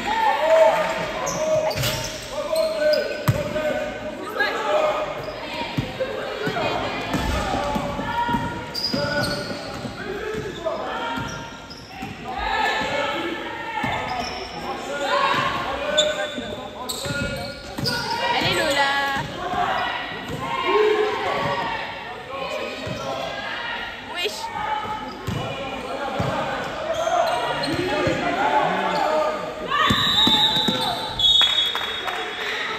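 A basketball being dribbled and bounced on the court during play, giving repeated knocks that echo in a large sports hall, mixed with players' shouted voices.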